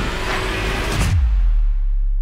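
Trailer score and sound design closing on a final hit about a second in. After the hit a deep, loud low boom holds while the higher hiss fades away.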